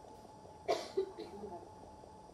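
A person coughing twice in quick succession, a little under a second in.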